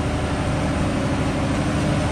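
Superyacht engine-room machinery running with a steady, even hum of several held low tones.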